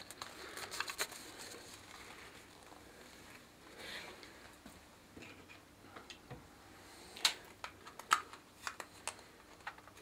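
Light handling noise from a clear plastic container and a plastic exercise ball: soft rustling and crinkling with scattered small plastic clicks, a couple of them sharper in the second half.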